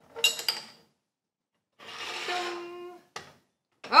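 Porcelain and glass teaware clinking on a bamboo tea tray as gaiwans and glass pitchers are set down and moved: a short clatter with a faint ring at the start, a softer sound about a second long in the middle, and one sharp click near the end.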